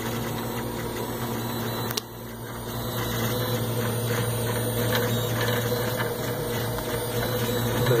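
3D printer running with its printed extruder gearbox, giving a steady mechanical hum; the sound dips briefly about two seconds in, then carries on a little louder.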